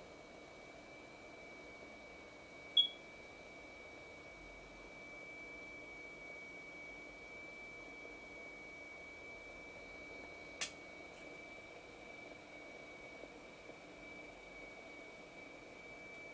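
A faint, steady high-pitched tone: the tone driving a vibrating steel plate, which sets the sand on it flowing in currents. A short chirp comes about three seconds in, and a sharp click about ten and a half seconds in.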